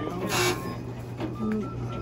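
Coin-operated kiddie ride playing a simple electronic beeping tune of short high notes over a steady low hum. A brief hiss comes about half a second in.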